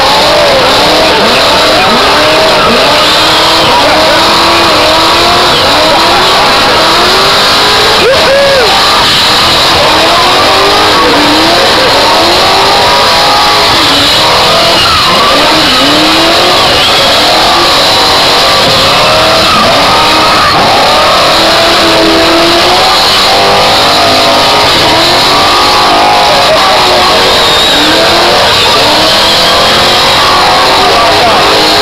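Stroked small-block Mopar V8 of a Chrysler Valiant VG hardtop revving hard during a burnout, its pitch rising and falling over and over about once a second, over the hiss of rear tyres spinning on the track. Loud and unbroken throughout.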